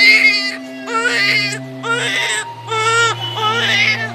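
An infant crying in a string of wavering wails, about one a second, over background music with long held notes.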